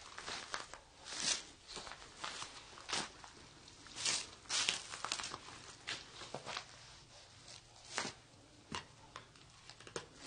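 Faint, irregular crunches and scuffs of footsteps on a gritty, debris-strewn floor, with a few sharper clicks scattered through.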